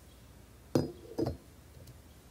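Funnel being set into the neck of a glass cruet pitcher: two glassy clinks about half a second apart, each ringing briefly.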